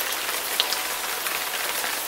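Steady rain falling on hard surfaces, an even hiss with a few sharper drop hits, one louder about half a second in.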